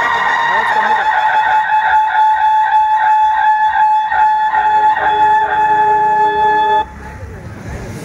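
Roof-mounted horn loudspeakers on an auto-rickshaw blaring a loud, held electronic tone of several steady notes, with lower notes joining about four to five seconds in, then cutting off abruptly near the end: the band's speaker system being tested.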